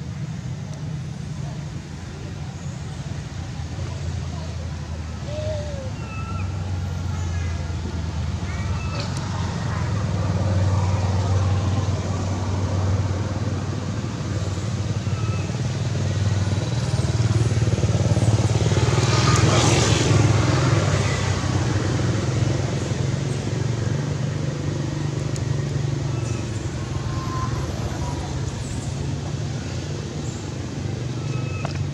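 A low, steady motor-vehicle engine drone that swells to its loudest about two-thirds of the way through, as if a vehicle passes close, then eases off. A few faint, short, high squeaks are scattered over it.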